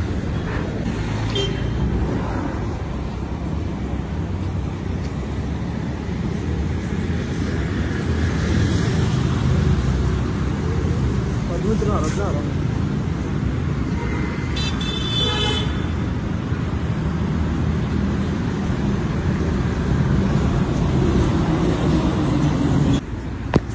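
Steady rumble of city road traffic, with a vehicle horn sounding briefly about two-thirds of the way through.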